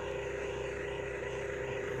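A steady engine or motor drone holding one pitch throughout.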